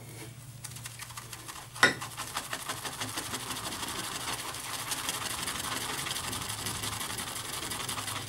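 Large Frank Shave shaving brush whisked rapidly in a ceramic bowl, building lather from shaving soap: a fast, even swishing that grows fuller from about two seconds in. There is a single sharp knock just before that.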